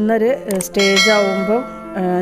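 Background music with a voice, and a bell-like chime that rings out a little under a second in and fades within about half a second.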